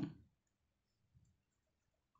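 Near silence, with a few faint ticks from a pen drawing on paper.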